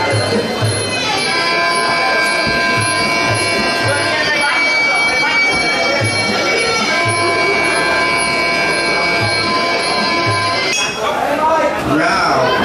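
Muay Thai sarama fight music: a Thai reed oboe (pi) playing long, held nasal notes over regular drum beats. Near the end the piping gives way to louder crowd voices.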